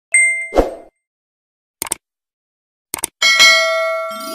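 Subscribe-button animation sound effects: a short chime and a thud, two mouse clicks about a second apart, then a bell-like ding that rings on and fades.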